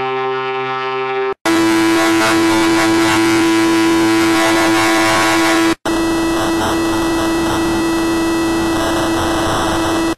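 Heavily distorted, effects-processed audio: a harsh, dense noise over a steady droning tone. It plays in separate blocks that cut off abruptly and restart, about a second and a half in and again near six seconds.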